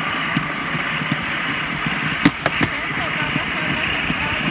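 Steady rolling rumble and rattle of a small rail cart travelling along the track, with three sharp clacks a little past the middle.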